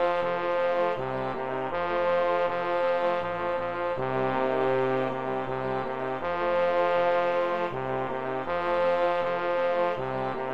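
Notation-software playback of a four-part choral hymn arrangement with piano accompaniment, the bass line brought to the front as the part being taught, moving in steady held notes that change about every beat.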